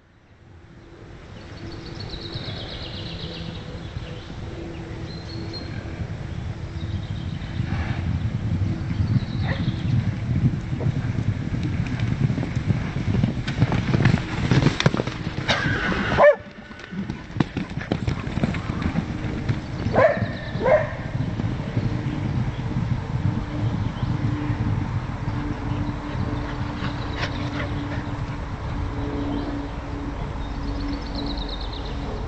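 Loose horses galloping and cantering, their hoofbeats drumming on soft sandy ground, with a couple of short calls about two-thirds of the way through. The sound drops out briefly about halfway.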